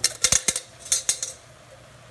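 Diced zucchini poured from a metal bowl into a stainless-steel pan, a quick run of clattering knocks as the pieces and the bowl hit the pan, lasting a little over a second.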